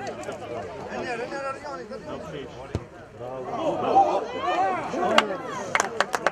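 Players shouting on an open football pitch, with a sharp thud of a football being kicked about halfway through and two more sharp knocks near the end.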